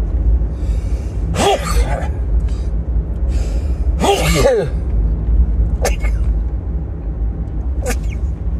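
A man sneezing twice, about a second and a half in and again near the middle, over the steady low rumble of the car in the cabin. The sneezes come from sunlight in his eyes: a photic sneeze reflex, as he explains it himself.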